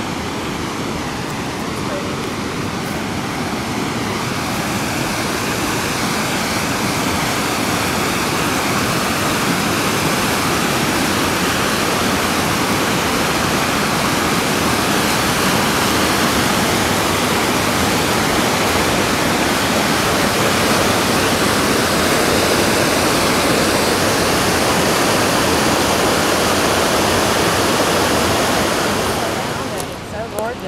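Rushing water of a rocky mountain river running through rapids, a steady loud rush that grows louder over the first several seconds and falls away near the end.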